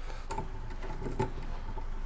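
A few light clicks and taps as parts are handled on a bare motorcycle frame while the rear shock is being fitted back in, with a slightly louder click just past halfway.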